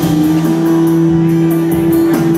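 Live rock band playing in a large hall, with one long steady held note over the band.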